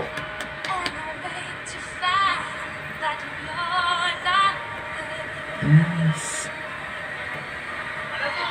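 Young female singer holding notes with vibrato in two phrases. A brief low male voice sounds about six seconds in.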